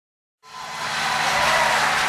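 Dead silence for about half a second, then audience applause fades in and grows louder.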